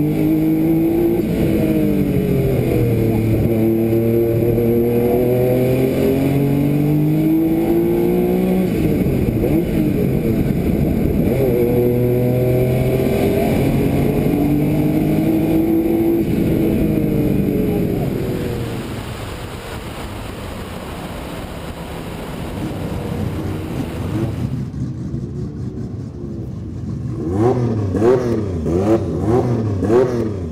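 Porsche 956 twin-turbocharged flat-six race engine heard on board, pulling hard up the hill with its pitch climbing and dropping at each gear change and lift. About 18 seconds in it fades down, and over the last few seconds a sharper engine sound comes back with quick rises and falls in revs.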